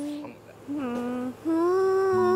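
A woman humming a slow lullaby tune in long held notes, with a short break under a second in.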